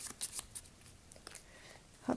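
Cards being shuffled by hand: a series of quick, soft card flicks and rustles, irregular and faint.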